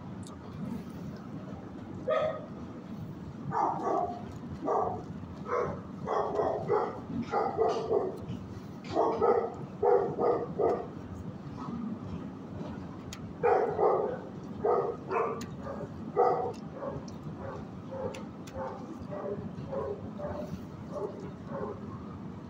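Dogs barking in the kennels of an animal shelter: short barks in runs, several a second, loudest about nine and fourteen seconds in, over a steady low background hum.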